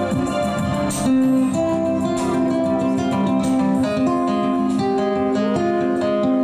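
Nylon-string acoustic-electric guitar played live through a PA, picking a melody over ringing, sustained notes.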